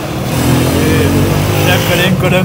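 Street traffic: a motor vehicle's engine running close by. It grows louder a moment in and holds over a steady low engine hum, with voices in the background.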